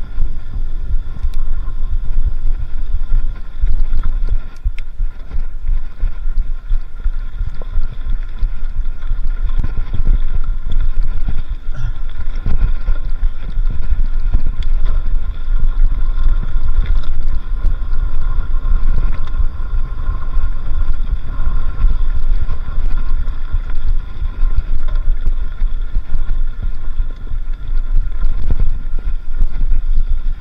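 Wind buffeting the microphone of a handlebar-mounted camera over the rumble and rattle of a mountain bike rolling fast over a sandy dirt trail, with small knocks from bumps in the ground and a faint steady whine throughout.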